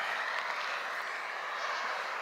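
Steady hiss of road traffic: cars driving on a multi-lane highway, heard from a distance as even tyre and engine noise with no single car standing out.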